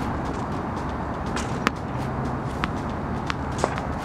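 A steady background rush with a few sharp knocks: one loud knock a little under two seconds in, then three fainter ones near the end. These are the struck ball landing and bouncing off the court and fence.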